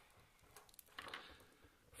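Near silence, with a few faint clicks about a second in from a cable and plastic modular plug being handled.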